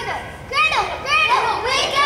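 Children's voices speaking in short, high-pitched phrases.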